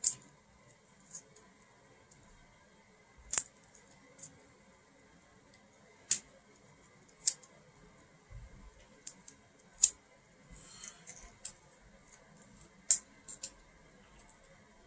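Plastic wrapping around a small stack of trading cards crinkling and clicking as it is handled and pulled open: scattered sharp clicks a second or few apart, with a short crackle a little past the middle.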